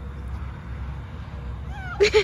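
A domestic cat gives one short rising meow near the end, over a steady low rumble.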